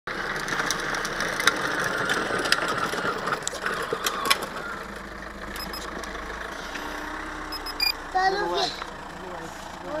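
A child's battery-powered ride-on toy motorbike driving over rough tarmac: a steady grinding whir with scattered clicks that stops about halfway through. Later come a few short high beeps and a brief voice near the end.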